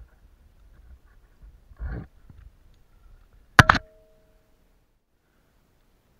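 A brief scuff about two seconds in, then a sharp clink of metal climbing gear, two or three quick knocks, that rings on briefly and fades.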